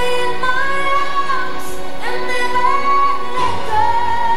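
Music: a slow song with a woman singing long held notes that slide from one pitch to the next.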